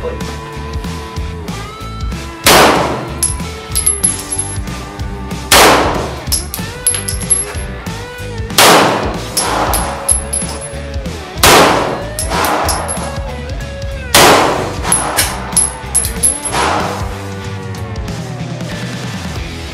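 Five loud single shots from a 9mm Beretta 92FS pistol, about one every three seconds, with fainter bangs between them. Background rock music plays throughout.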